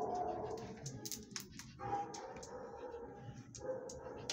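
Dogs in an animal shelter's kennels, with short whines and barks, mixed with scattered sharp clicks and taps.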